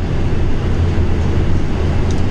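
Steady road and tyre noise inside the cabin of a Tesla Model 3 Performance cruising on the motorway: a constant low rumble with no engine note, as the car is electric.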